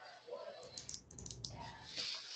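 Faint typing on a computer keyboard: a quick run of light clicks around the middle.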